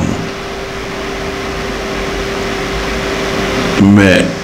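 Steady background noise in a room: an even hiss over a low rumble, with a faint steady hum.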